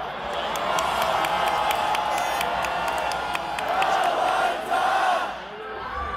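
A large rally crowd cheering and shouting, many voices at once, as a candidate takes the stage, with scattered sharp clicks through the noise. The crowd gets a little quieter near the end.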